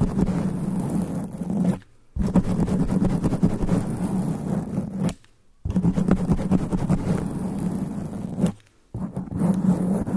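Long fingernails scratching fast over a microphone's foam sponge cover, right on the mic: a dense, deep scratching noise. It runs in bouts of about three seconds, stopping briefly about 2, 5 and 8.5 seconds in.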